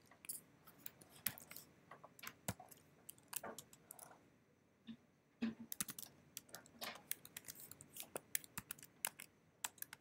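Keystrokes on a computer keyboard typing shell commands: faint, irregular runs of clicks, with a pause of about a second near the middle.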